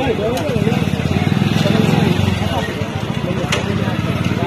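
Several men's voices over a steady low rumble outdoors.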